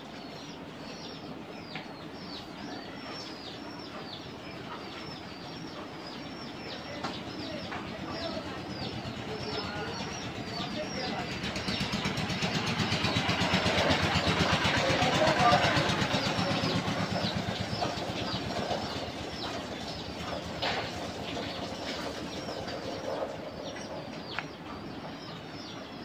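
A motor vehicle's engine passing by, growing louder to a peak about halfway through and then fading, over steady high chirping of birds.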